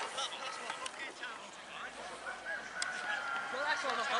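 Scattered shouts and calls from rugby players and spectators, with one long drawn-out call near the end.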